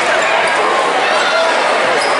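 Basketball game in a gymnasium: a basketball bouncing on the hardwood floor under steady chatter and calls from players and spectators.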